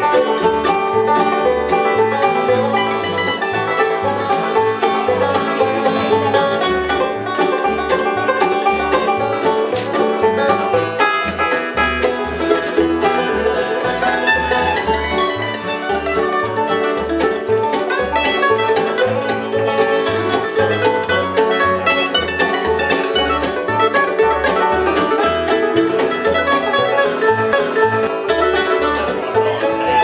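Bluegrass band playing an instrumental break with no singing. Five-string banjo to the fore over acoustic guitar, mandolin and fiddle, with upright bass keeping a steady beat of low notes.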